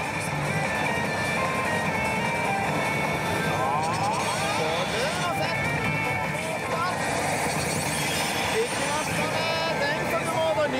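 Pachislot machine playing its bonus-round music and sound effects, over the steady, dense din of a pachinko parlor.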